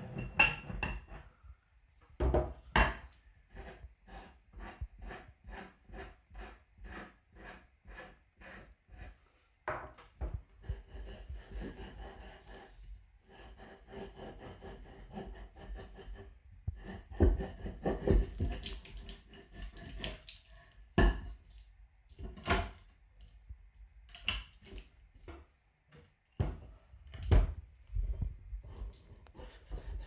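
A metal grinding disc and its bolted clamp plate being taken apart on a wooden table after the glue under the new emery papers has set: an even run of clicks, about two to three a second for several seconds, as the bolt and nut are worked loose. Then scraping and rubbing, and several loud metal knocks and thunks as the heavy disc is handled and set down.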